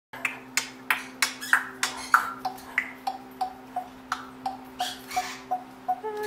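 A steady run of sharp clicks, about three a second, some ending in a short pitched pop, over a faint steady hum.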